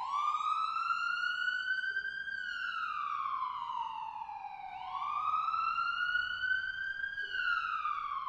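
Ambulance siren wailing: one tone that slowly rises in pitch for about two seconds, then falls for about two, then rises and falls again.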